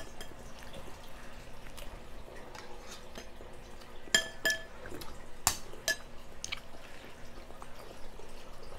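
Cutlery clinking against a bowl at a meal table: a few sharp clinks about halfway through, the first pair ringing briefly, over faint small tableware noises.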